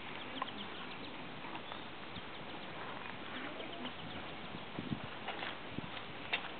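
Quiet outdoor background: a steady hiss with faint, scattered short chirps.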